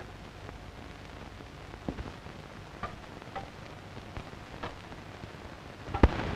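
Steady hiss of an old 1930s optical film soundtrack, with a few faint scattered clicks.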